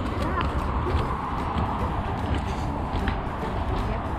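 Footsteps going down wooden trail steps, over a steady low rumble of wind and handling noise on a GoPro's microphone.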